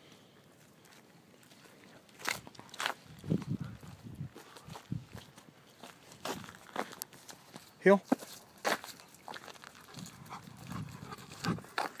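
Irregular footsteps and scuffs on a gravelly path, with scattered clicks and the rustle of clothing rubbing close to the microphone.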